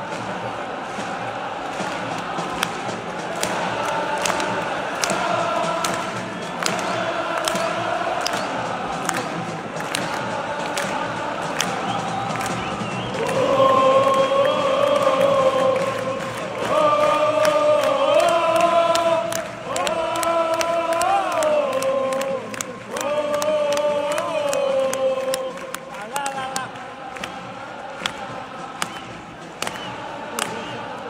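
Football stadium crowd singing a chant together, swelling through the middle into a loud, held melody that steps up and down in pitch, with sharp claps scattered throughout.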